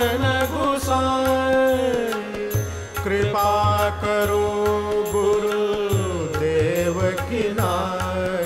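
Hindustani devotional bhajan: a male voice holds long sung notes, each phrase sliding down at its end, over a steady drone and a regular drum beat.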